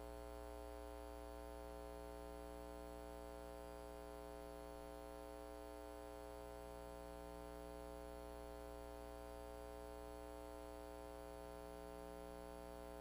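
Faint steady electrical mains hum with a buzzy edge, unchanging throughout.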